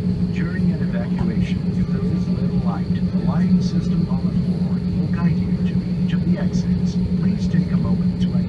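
Steady low drone inside the cabin of an Airbus A320 taxiing, engines and cabin air running, with a recorded safety announcement voice over it.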